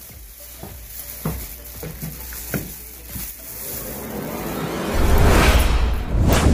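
Sound effect of a channel logo intro: a few faint ticks, then a hissing swell that builds from about halfway in and turns loud with a deep rumble near the end.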